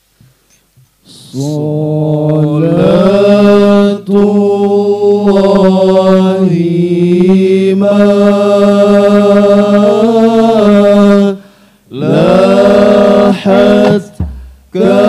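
A group of male voices chanting a devotional Arabic-style syair in unison, without instruments, holding long notes over a steady low drone. The chant starts about a second in, rises in pitch, breaks off briefly near the end and then starts again.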